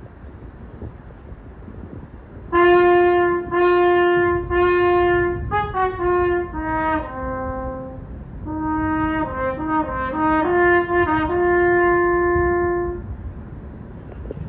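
Solo French horn playing slowly over a low background rumble. About two and a half seconds in it sounds three long repeated notes, then a falling run of shorter notes. After a short pause it plays a moving phrase that ends on one long held note near the end.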